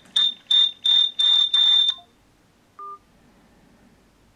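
A smartphone ringing for an incoming call: a repeated high electronic beep at one pitch, each beep longer than the last, cutting off about two seconds in as the call drops. Near three seconds comes a single short, lower blip.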